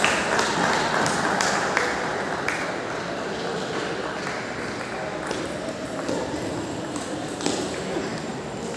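Table tennis balls clicking off bats and tables, scattered irregular ticks from several games at once, over the steady background chatter of many voices.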